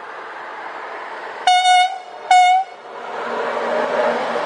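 Siemens Krauss-Maffei class 120 'HellasSprinter' electric locomotive sounding two short horn blasts of one steady tone, a little under a second apart, as it approaches. From about three seconds in, the rush of the locomotive and coaches passing close by grows louder.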